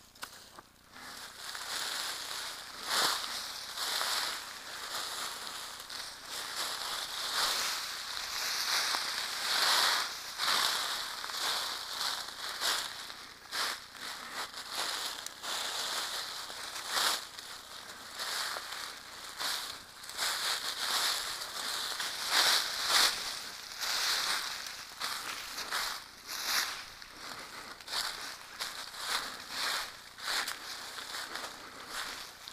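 Footsteps crunching through dry leaf litter and brush, with twigs crackling and plants rustling against the walker, in an uneven, irregular rhythm.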